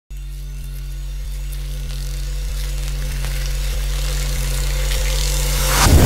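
Cinematic trailer sound design: a low sustained drone that slowly swells, with a soft tick about every two-thirds of a second, building into a rising whoosh near the end that breaks into a boom.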